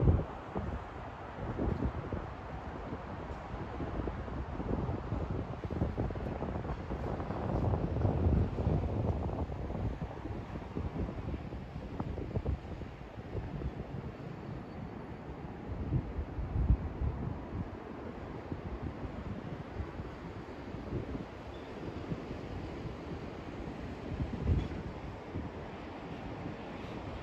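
Wind buffeting the phone's microphone in uneven low gusts, the strongest about a third of the way in, past the middle and near the end. Under it runs a steady hum of city traffic.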